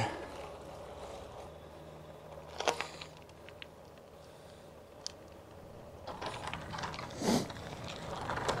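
Gravel bike rolling quietly on a lane with faint mechanical ticking and clicks from its drivetrain. A sharper click comes about two and a half seconds in, and a short rush of noise near the end.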